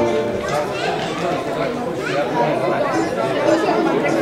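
Several people talking over one another, a hubbub of chatter. Band music breaks off right at the start.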